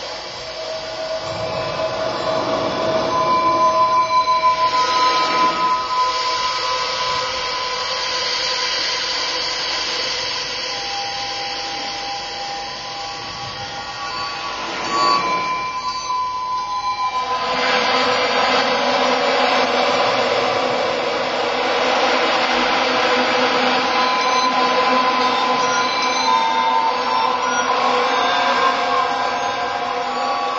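Experimental electroacoustic music: a dense hissing noise texture with several held tones layered over it. There is a sharp accent about halfway through, and then the texture grows thicker and louder.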